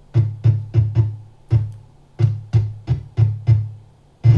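Background music: a run of short, evenly struck notes over a low bass, about three a second.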